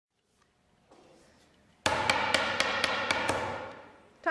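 A sudden series of loud knocks, about six in a second and a half, over a ringing tone that fades near the end.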